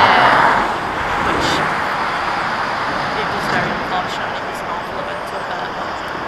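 An articulated lorry passing on the road, loudest at the start and fading away within the first second. Steady traffic noise carries on after it.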